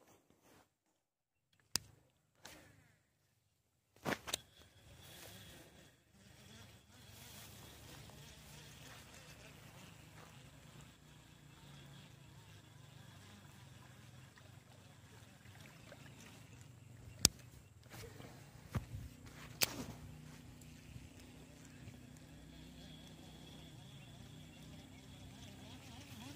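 Faint steady low hum of outdoor background with sharp clicks and knocks of handling, the loudest about two-thirds of the way through; the first few seconds are nearly silent.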